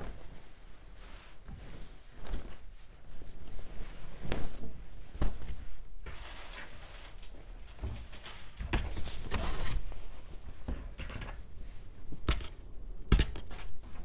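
Fabric being shaken out and spread on a cutting table: rustling cloth with scattered light knocks and taps.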